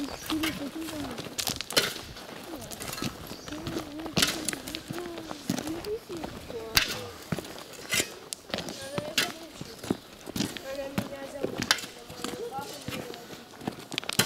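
Indistinct, distant voices talking, with scattered crunching footsteps on a gravel road.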